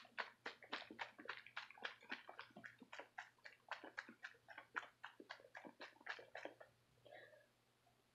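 Milk sloshing in a plastic baby bottle shaken hard by hand, about four shakes a second, stopping about six and a half seconds in.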